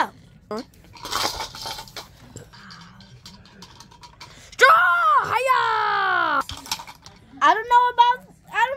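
A child's voice during toy play: a short hiss about a second in, then a long drawn-out cry a little before the middle that wavers and falls in pitch, with light plastic clatter of toy pieces and talk starting again near the end.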